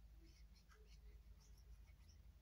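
Near silence, with a few faint soft ticks and rustles from hands handling a small plastic glue bottle.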